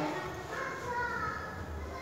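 Soft, indistinct voices, with children's voices among them, in a pause between chanted Arabic prayer.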